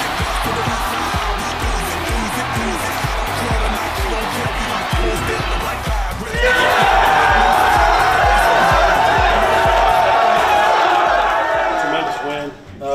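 Background music with a steady beat over crowd cheering in an arena. About six seconds in, the cheering gives way to louder close-up shouting and yelling of celebrating people.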